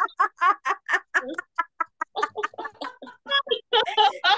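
Deliberate hearty laughter in a laughter-yoga exercise: a fast, unbroken run of voiced 'ha-ha' pulses, about five a second.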